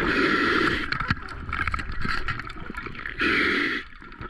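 A diver's exhaled bubbles rushing and gurgling out of the scuba regulator underwater: a long burst ending about a second in and a shorter one near the end, with faint clicks in between.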